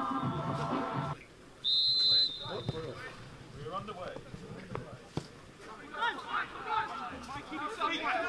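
Music cuts off about a second in. Then a referee's whistle sounds one short, loud, steady blast, signalling kick-off, followed by scattered shouts from players across the pitch.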